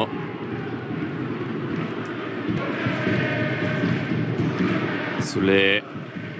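Football stadium crowd: a steady noise of many voices from the stands, with a short single-voice exclamation near the end.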